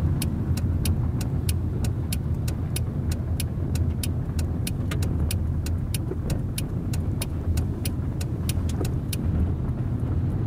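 Inside a car cabin: a steady engine and tyre rumble while the car turns through an intersection, with the turn-signal indicator ticking about three times a second. The ticking stops shortly before the end as the turn is completed.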